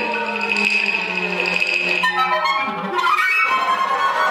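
Live contemporary chamber ensemble of flutes, clarinets, violins, cellos, percussion and two pianos playing. A high held note with a fluttering pulse sounds over a low sustained note for about two seconds, then the texture changes to a new cluster of held notes about three seconds in.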